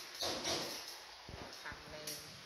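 Baby macaque vocalising while being bottle-fed: a breathy sound about a quarter second in, then a short pitched call near the end.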